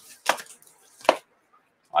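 Two sharp knocks about a second apart, the second louder: hard objects being handled and set down on a desk.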